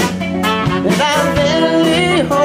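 A soul band playing live, with trumpet and tenor saxophone over drums and electric guitar, and singing.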